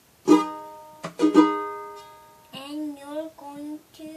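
Ukulele chord strummed once, then strummed again twice in quick succession about a second in, the chord left to ring out and fade. A child's voice follows in the last second and a half.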